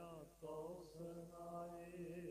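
Male voice singing a line of Sikh shabad kirtan in a chanting style over a steady harmonium accompaniment; the voice breaks off briefly about half a second in, then holds long, steady notes.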